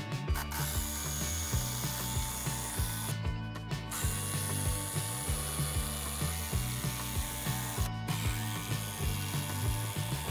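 Cordless impact driver hammering long screws through a timber wall frame's bottom plate into the base, in three bursts with short pauses about three seconds in and near the eighth second.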